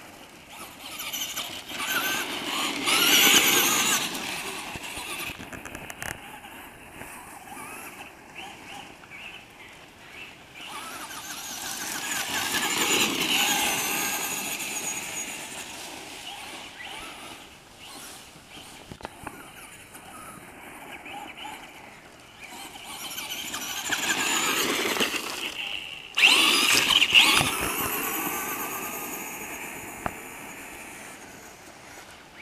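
Radio-controlled monster truck's motor whining at a high pitch, rising and falling in pitch as it speeds up and slows. It swells loud three times as the truck races past, with a sudden loud burst about 26 seconds in.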